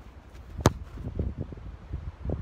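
A football kicked once on grass, a single sharp thud about half a second in, followed by low rumbling of wind on the microphone.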